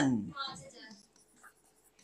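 A man's spoken word trailing off, then faint sounds of a pen writing on an interactive whiteboard screen for under a second.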